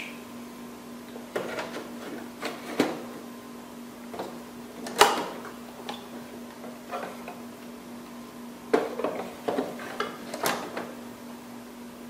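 Scattered plastic knocks and clicks as a toner cartridge is handled and slid into its bay in a Ricoh Aficio 2238C copier. The loudest knock comes about five seconds in, and a steady faint hum runs underneath.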